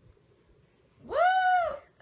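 A single high, excited "woo!" cheer whose pitch rises and then falls, about a second in, after a near-quiet start.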